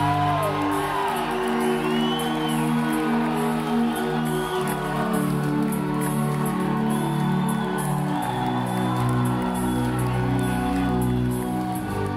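Live concert music in an instrumental stretch of a song: sustained chords over held bass notes that change every few seconds, with a few whoops from the audience.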